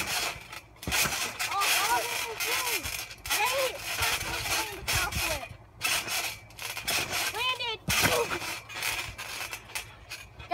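Trampoline mat thudding and rattling as a boy bounces and lands on it, picked up by a phone lying on the mat, with several short wordless cries or calls from the boys.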